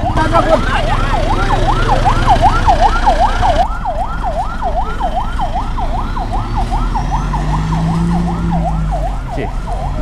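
Siren of an EMS rescue pickup ambulance sounding a fast yelp, its pitch sweeping up and down about three times a second, as the vehicle drives off.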